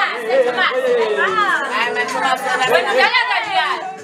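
Several people talking over one another in a room: overlapping chatter with no single clear voice.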